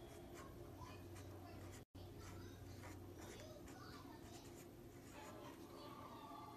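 Faint scratching of a pen writing on paper, in short strokes, broken by a brief cut to total silence about two seconds in.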